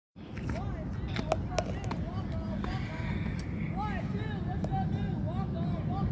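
Distant voices of players and spectators calling out at a ballfield, many short rising-and-falling calls, over a steady low rumble, with a few sharp clicks in the first two seconds.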